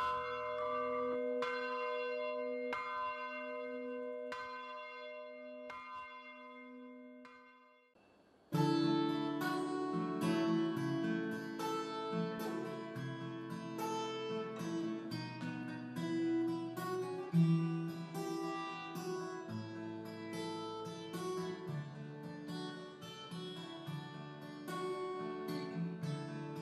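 A church bell ringing in its tower, struck about once a second, its ringing dying away over about eight seconds. Then an acoustic guitar starts playing and runs on as a steady flow of picked notes and chords.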